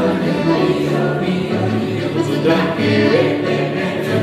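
A group of voices singing a melody together, choir-like, with music.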